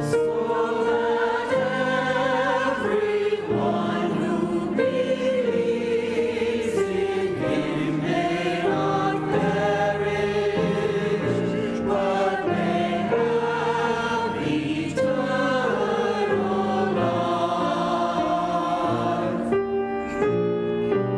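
Mixed church choir of men and women singing together, several voices holding notes at once and moving between chords.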